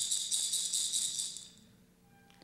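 A rattle shaken once as a page-turn cue in a read-along story recording, a dense high shaking that fades out about a second and a half in.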